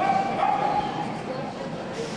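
A dog whining: one long, steady, high whine that stops about a second and a half in, over background chatter.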